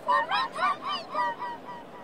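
A person laughing in a quick run of about eight short, high-pitched syllables that fade out about a second and a half in.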